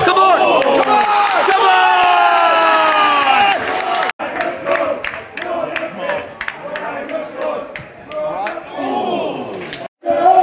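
Football stadium crowd: many voices shouting and chanting together. After a cut about four seconds in, the crowd is quieter, with scattered short sharp knocks in the noise.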